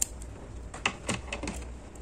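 Small scissors snipping through a yarn tail: one sharp snip right at the start, then a few lighter clicks as the scissors are handled.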